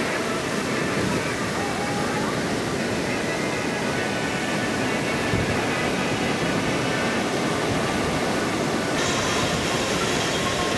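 Ocean waves breaking: a steady rushing noise of surf.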